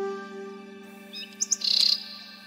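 A held flute note fades out over a low steady drone, then a bird chirps a few short high notes and a brief trill in the second half.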